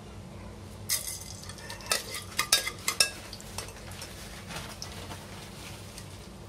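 A steel spoon clinking and scraping against the inside of an aluminium pressure cooker as whole black peppercorns are stirred into melted ghee. A cluster of sharp clinks falls between about one and three and a half seconds in.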